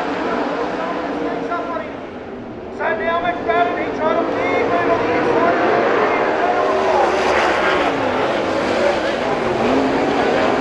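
A pack of winged sprint cars' V8 engines running on a dirt oval. About three seconds in they jump in loudness and climb steeply in pitch as the field accelerates, typical of the race start.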